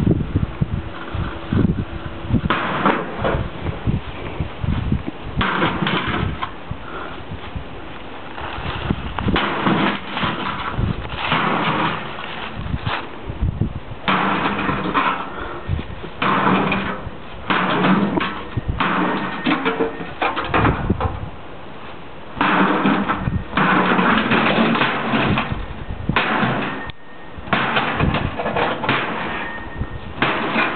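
A battle axe repeatedly hacking into a microwave oven: irregular runs of heavy metal blows and clattering of the sheet-metal housing, in bursts several seconds long.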